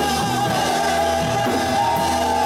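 Church congregation singing a worship song together over instrumental accompaniment, with voices held on long notes and some people calling out.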